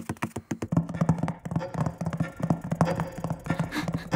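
Cartoon sound effect of the big elf clock's works: a rapid, irregular run of clicks with a low pulsing hum coming in about a second in.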